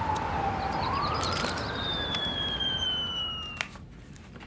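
Emergency vehicle siren wailing over street noise, its pitch slowly falling, then rising and falling again. It cuts off near the end.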